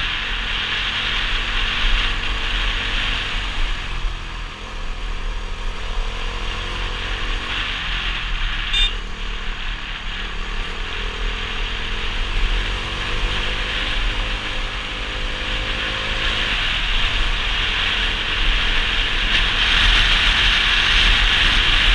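Motorcycle running along at road speed, wind rushing hard over the camera microphone; the engine note rises and falls with the throttle. One brief sharp click about nine seconds in.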